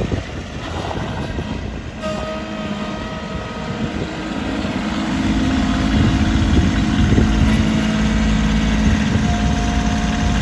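Kubota compact diesel tractor's engine running as the tractor drives about. It grows louder and steadier about halfway through as the tractor comes closer, and a thin whine shows briefly a couple of seconds in.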